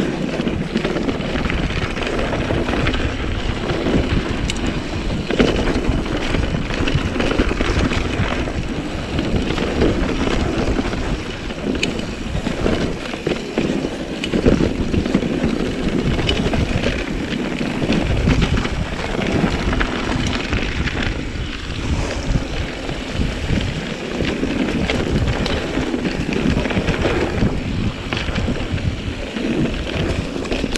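Steady wind buffeting on the camera's microphone while a mountain bike rolls over a dirt forest trail, with the rumble of its tyres on the ground.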